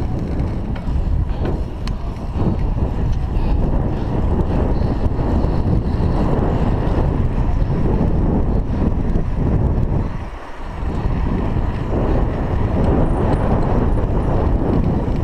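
Wind rushing over the microphone of a chest-mounted GoPro Hero 3 on a moving bicycle: a steady low rumble that drops away briefly about ten seconds in.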